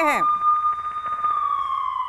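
A single held electronic tone with faint overtones, steady at first and then gliding slightly down in pitch in the second half, used as a broadcast transition sound effect. A man's voice finishes a word at the very start.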